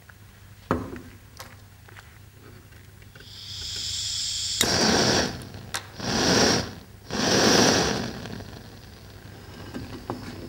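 Hand-held gas blowtorch being lit. A knock comes under a second in, then gas hisses from about three seconds, and the flame burns loudly in three bursts of about a second each before settling to a fainter hiss.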